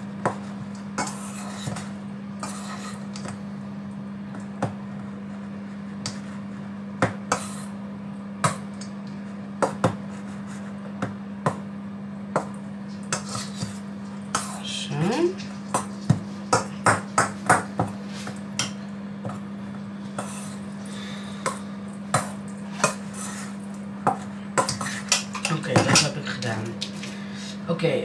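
Metal spoon clinking and scraping against a stainless steel bowl as cooked couscous is stirred, in irregular clicks that come thicker around the middle and again near the end. A steady low hum runs underneath.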